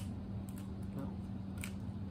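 Plastic packaging of fishing hooks being handled, giving a few short crackles and clicks over a steady low hum.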